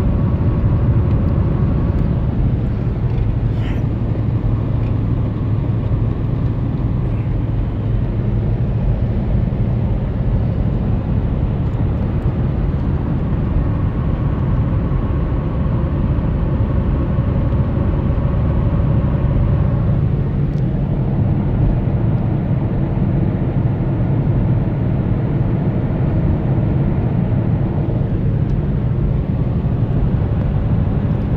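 Steady road noise inside a moving vehicle cruising on an open road: a low rumble of engine and tyres. A faint hum rises over it near the start and again for several seconds in the middle.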